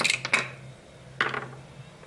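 A few light clicks and clinks of a metal screwdriver and small glass and metal parts being handled at an opened LED light housing, with a sharper clink a little over a second in that rings briefly.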